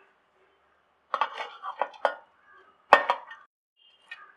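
Chopped banana flower tipped from a steel bowl into a stainless-steel mixer-grinder jar: a cluster of clinks and rattles about a second in, then a single sharper steel-on-steel clink, the loudest, near the end, ringing briefly.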